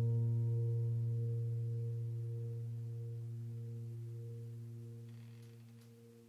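The last low piano note of the background music ringing out alone and fading away steadily, almost gone by the end.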